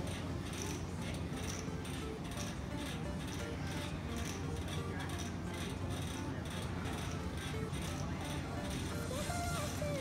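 Background electronic dance music with a steady beat.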